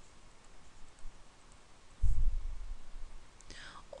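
Faint clicking and tapping of a stylus on a pen tablet while a word is handwritten, over low background noise. A dull low thump comes about halfway through, and a breath is heard near the end.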